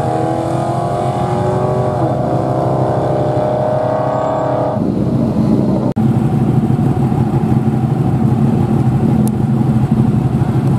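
A Dodge Challenger's engine accelerating hard down a drag strip, its pitch climbing with a gear change about two seconds in. About five seconds in, the sound cuts abruptly to a rougher engine running at a steady speed.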